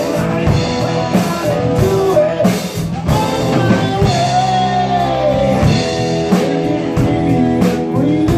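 Live rock band playing a song: drum kit beat with regular cymbal and snare hits under electric and acoustic guitars and vocals, with a long bent note near the middle.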